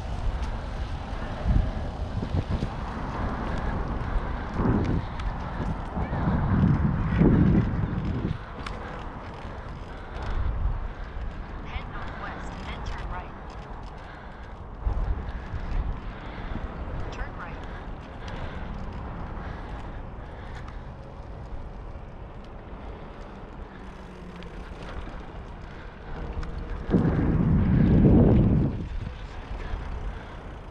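Wind buffeting the microphone of a camera on a moving bicycle: low rumbling gusts that rise and fall, with the loudest swell near the end.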